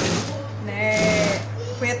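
Industrial sewing machine running, stitching through the thick edge of a rug, over a steady low motor hum. The machine has just been re-adjusted after it was skipping stitches.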